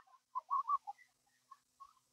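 Near quiet with a few faint short chirps, like a small bird calling: a quick run of them in the first second and two more near the end.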